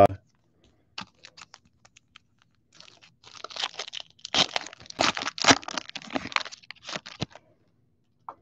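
A 2002 Upper Deck Piece of History football card pack being torn open by hand. A few light clicks, then several seconds of crinkling and tearing of the wrapper, loudest in the middle, stopping shortly before the end.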